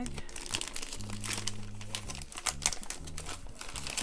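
Clear plastic bag crinkling as it is handled and opened by hand, an irregular run of quick crackles.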